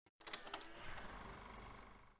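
Faint clicks, then a soft mechanical rattle that fades out, at the very start of a film trailer's soundtrack.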